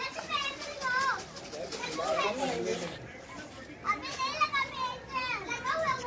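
Children's high-pitched voices calling out and chattering excitedly as they play.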